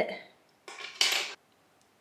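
A short metallic clatter of a pair of hair-cutting scissors being picked up and handled, loudest about a second in.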